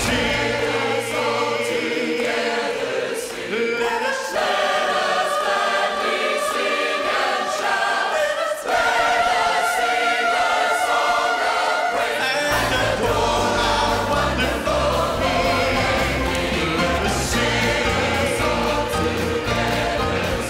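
Large church choir singing a gospel song with a live band. The bass drops out about a second in and comes back in about twelve seconds later.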